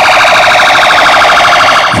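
Police vehicle siren sounding a fast, pulsing warble that stays at a steady pitch.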